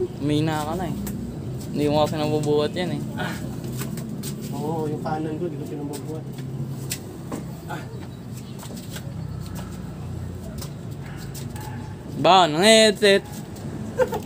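Short bursts of a man's wordless voice, the loudest and most wavering about twelve seconds in, over a steady low hum and a few light clicks.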